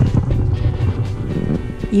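Low, uneven rumble of wind buffeting the microphone, with background music faintly underneath.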